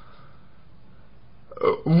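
A short pause in a man's speech with only a faint steady hiss. His voice comes back about one and a half seconds in.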